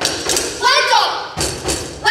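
Heavy knocks on a wooden stage-set door, with a voice calling out between them.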